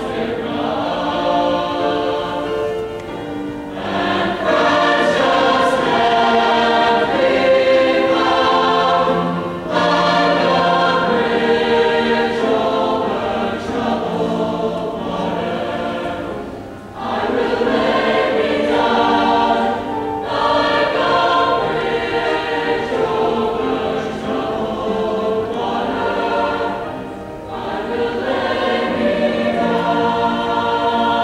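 Large mixed choir singing in long sustained phrases, with a few short breaks between them.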